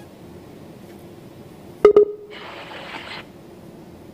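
Two short tones, close together, from the remote guest's audio line, then about a second of hiss. They are connection noises from a live remote link that is not yet carrying the guest's voice.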